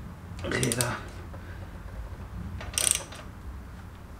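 Hand ratchet clicking in two short bursts, about half a second in and near three seconds in, as it is swung back and forth to break loose the camshaft sprocket bolts on a V6 engine.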